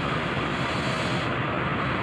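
Steady, even running noise of a stationary CC 201 diesel-electric locomotive idling at the head of its passenger coaches.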